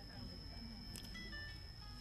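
A quiet pause in a man's amplified speech: a faint steady hum, with a brief run of short, high electronic tones stepping in pitch about a second in, a little jingle of the kind a phone or toy plays.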